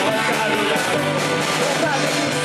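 Live Irish folk-punk band playing loudly, with piano accordion, guitar and drums driving a steady beat.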